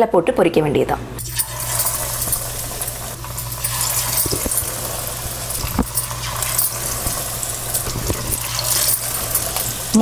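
Batter-coated tilapia pieces sizzling steadily as they deep-fry in hot oil, the sizzle starting about a second in, with a few light clicks near the middle.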